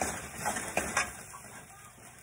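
A metal spoon clinks and scrapes against a stainless-steel wok a few times in the first second, over the sizzle of onions and sardines sautéing in the pan; the sizzle then fades to a low hiss.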